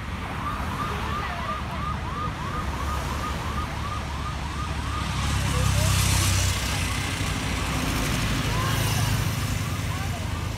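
An electronic vehicle siren yelping, its pitch rising and falling quickly about three times a second. Cars and a motorcycle pass close by with a rush of road noise, loudest about six seconds in and again near the end.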